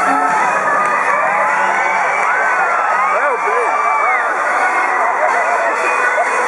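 A stadium crowd of spectators cheering and calling out during a killer-whale show. Many voices overlap, with high, drawn-out children's shouts rising and falling above the crowd noise.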